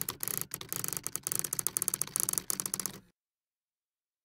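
Rapid mechanical clicking and ticking, like typewriter keys or shuffling letter tiles, from a logo-animation sound effect as scrambled letters sort themselves into a word mark; it cuts off suddenly about three seconds in.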